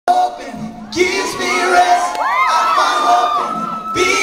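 Concert audience cheering and screaming, many high-pitched voices overlapping, getting louder about a second in.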